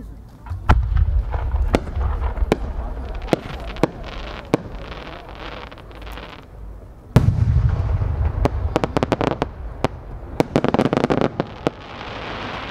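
An 8-go (8-inch) senrin-dama firework shell with rising small flowers: a launch thump with a low rumble, then a string of sharp cracks as the small flowers burst along its climb. About seven seconds in comes the deep boom of the main shell breaking, followed by a rapid crackle of dozens of small sub-shells bursting over a few seconds.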